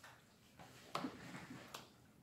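Faint eating sounds: two light clicks of forks in plastic takeout salad containers, one about a second in and one near the end.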